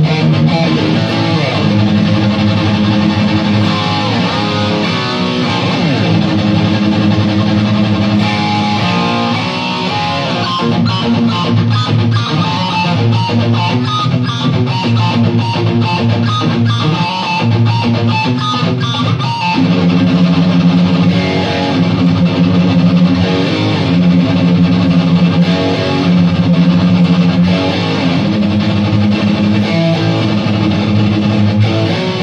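Black Flying V electric guitar played solo: held low chords, then a rapid run of picked notes through the middle, returning to held low chords about two-thirds of the way through.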